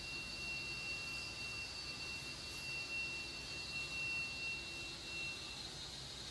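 Steady high-pitched whine over a faint low hum from a DC-powered roll manipulator as it is moved across the floor, cutting off about five seconds in.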